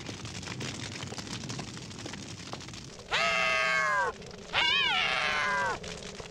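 Two long, high meows like a cat's, the first held about a second and falling at its end, the second longer and wavering in pitch before falling. Under them runs a steady crackling hiss, in keeping with the fire burning in the house.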